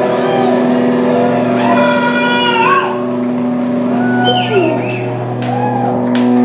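Electric guitar note left ringing steadily through the amplifier at the end of a live rock song, with voices calling out over it in short bursts.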